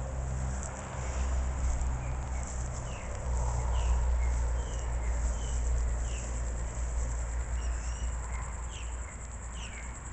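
Outdoor ambience of insects chirping steadily and high, with short bird chirps every so often, over an uneven low rumble.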